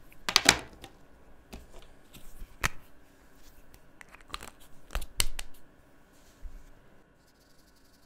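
Plastic felt-tip marker pens being handled: a scattered series of sharp plastic clicks and taps as a marker cap is pulled off and another clicked shut, quieter toward the end.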